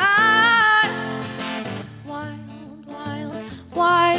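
A woman sings a held note with vibrato that ends about a second in. A steel-string acoustic guitar plays on alone, and her voice comes back near the end.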